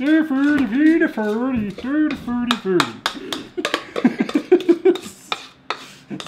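A spatula scraping and clicking against a mixing bowl as brownie batter is scraped into a metal baking pan: a run of short scrapes and taps in the second half. Before it, a man's voice goes sing-song in a mock Muppet impression, and there is a short laugh a little past the middle.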